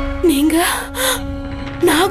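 A woman gasping and letting out short, shocked vocal sounds over a held note of dramatic background music.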